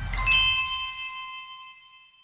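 Logo-reveal sound effect: a bright bell-like chime struck just after the start over a low whoosh, its ringing tones fading out over about two seconds.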